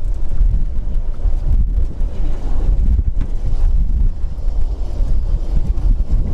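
Wind buffeting the camera microphone: a loud, uneven low rumble throughout.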